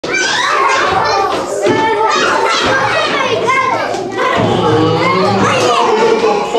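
A roomful of young children's voices at once, shouting and chattering over each other as they play.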